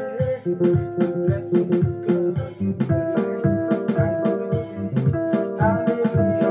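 Electronic keyboard playing a makossa groove: a bouncing bass line under repeated held chords, with one note bent up and down in pitch right at the start.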